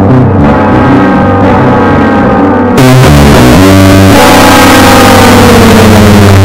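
Very loud music with a guitar. About halfway through it jumps even louder and turns harshly distorted, and its pitch slides slowly downward near the end.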